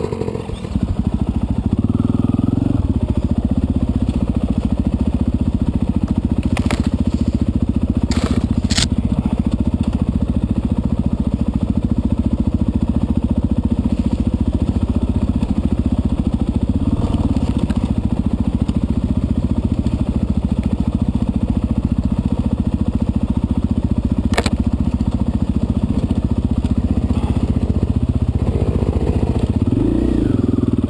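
Dirt bike engine heard close up on the bike being ridden, picking up in the first couple of seconds, then running steadily at an even trail-riding speed. A few sharp clicks or knocks break through now and then.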